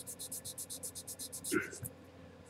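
Hobby sanding stick rubbed quickly back and forth over a marked line on masking tape to dull it down so it shows less through the tape: faint, even scratchy strokes, about ten a second.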